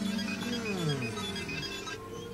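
Cartoon soundtrack of a lab computer at work: short electronic beeps and several tones sliding down in pitch, over background music.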